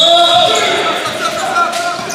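Basketball game on a hardwood gym floor: sneakers squeaking in high, bending squeals, the ball bouncing, and players' voices.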